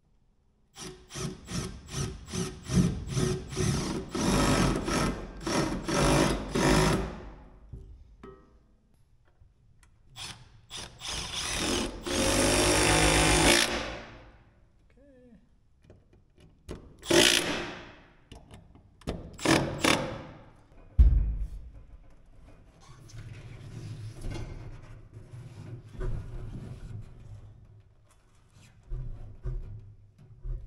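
Cordless driver running screws through a steel bracket plate into a wooden post, in several bursts of a few seconds each. The longest bursts come in the first seven seconds and again around the middle, with shorter runs later.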